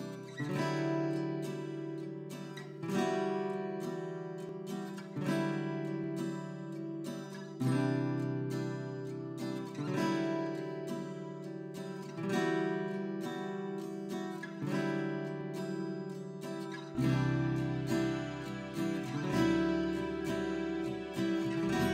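Background music of slow plucked string chords in the manner of an acoustic guitar, a new chord struck about every two seconds and left to ring. A deeper bass comes in near the end.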